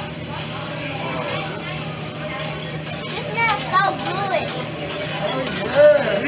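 Children's high-pitched voices calling out and chattering over a steady low hum and restaurant room noise. The voices grow livelier from about halfway through.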